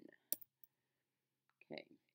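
A single sharp click of a computer keyboard key about a third of a second in, followed by a fainter tick.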